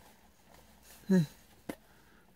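A man's short, low vocal sound about a second in, falling in pitch, then a single sharp click shortly after; otherwise near silence.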